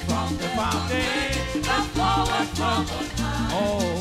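Upbeat church band music with a steady dance rhythm: a bass line and percussion, with voices singing a hymn over it.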